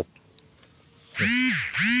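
A man laughing: two drawn-out laughs, each rising and falling in pitch, starting a little over a second in.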